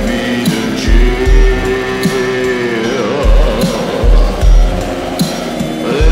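Indie rock song in a passage without vocals: heavy kick-drum thumps and cymbal hits under held, sustained chords.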